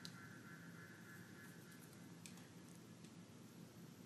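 Near silence: room tone, with one faint click a little over two seconds in.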